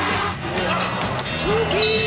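Basketball game audio: a ball bouncing on a hardwood court amid crowd noise, under background music. A voice starts a long held shout near the end.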